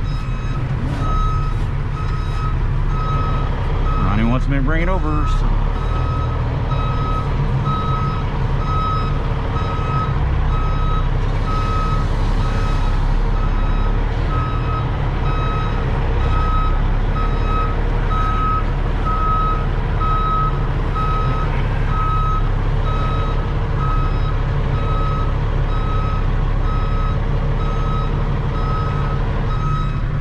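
A heavy truck's backup alarm beeping at an even pace as the truck reverses, over the steady rumble of its engine heard from inside the cab.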